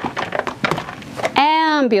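Hand rummaging among toys in a clear plastic storage bin: a scatter of small knocks and clicks. Near the end comes a woman's voice in one long drawn-out sound that rises and falls in pitch.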